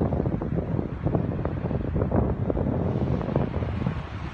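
Wind buffeting the microphone: a loud, uneven low rumble that comes in gusts.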